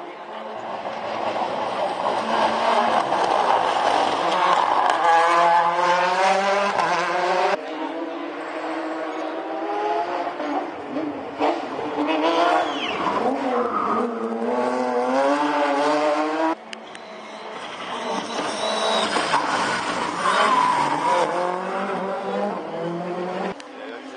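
Rally car engine at full throttle, its pitch climbing again and again and dropping away between, as it shifts up, lifts and accelerates through the stage. The sound cuts off suddenly a few times.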